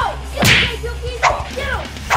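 Whip-crack and swoosh sound effects: a loud one about half a second in and a smaller one past the middle, over a steady low drone.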